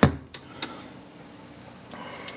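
A sharp click, then two lighter clicks a few tenths of a second apart, followed by low steady room noise.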